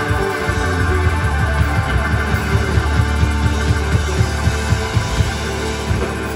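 Live southern rock band playing: electric guitars over a drum kit keeping a steady beat, with long held low bass notes underneath.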